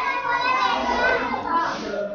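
Children's voices chattering in the background, quieter than close speech.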